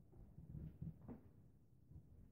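Near silence: room tone in a small room, with a few faint dull knocks about half a second to a second in.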